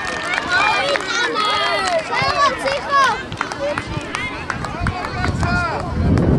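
Many high children's voices shouting and calling out over one another during a youth football match, with a few sharp knocks among them.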